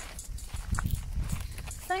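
Sika deer hooves stepping on stone steps and gravel close by, a few light knocks over a low rumble.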